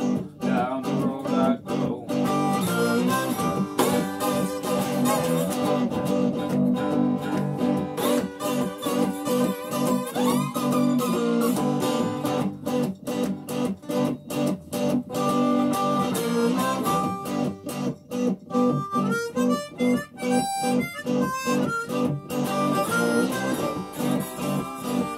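Live blues jam with no singing: a harmonica plays over guitars keeping a steady strummed rhythm.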